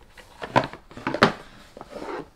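A stiff cardboard gift box sliding out of its outer sleeve and being handled: a scraping slide with two sharp knocks, about half a second and a little over a second in.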